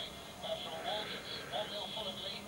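Faint speech in the background, low and indistinct, with no tool or mechanical sounds.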